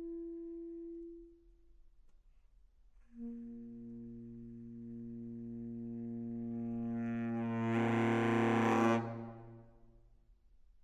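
Selmer Super Action 80 Series II baritone saxophone: a held note ends about a second in. After a short pause, one long low note begins and swells steadily louder and brighter before cutting off near the end, the closing note of the piece.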